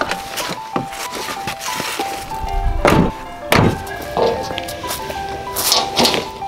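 Background piano music over several dull thunks and knocks of camping gear being unloaded from a car, the loudest two about three and three and a half seconds in.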